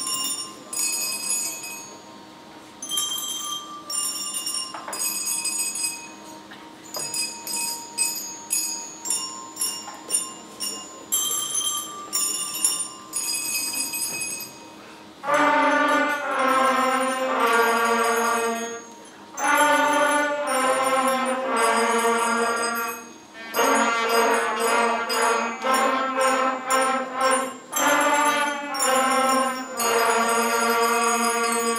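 A beginner school concert band playing. For about fifteen seconds there are only soft, separate bell-like notes over a faint held tone. Then, about halfway through, the full band of woodwinds and brass comes in loudly with sustained chords.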